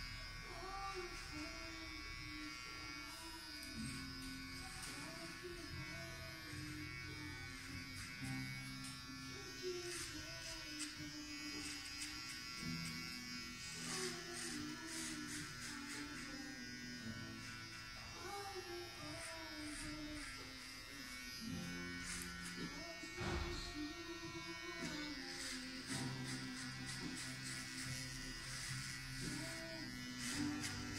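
Electric hair clippers buzzing steadily as they cut the hair on the side of the head down very short. Background music with a singing voice plays underneath.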